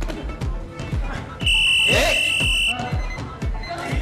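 Electronic round-timer buzzer in a boxing gym giving one steady, high-pitched tone for just over a second, starting about a second and a half in. It marks the end of a sparring round. Background music with a steady beat runs underneath.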